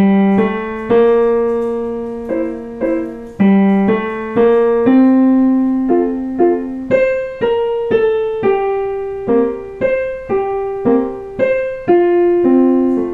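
Digital piano played by hand: a simple waltz tune in three-four time, a single-note melody over held left-hand bass notes, struck at a slow, even pace.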